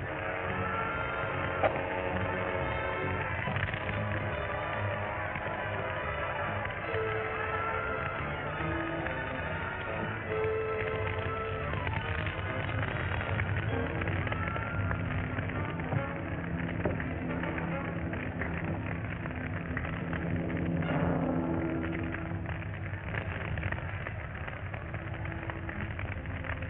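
Dramatic orchestral film score with long held notes, joined in the second half by dense crackling, the sound of the wreckage burning. The old soundtrack is dull, with no high treble.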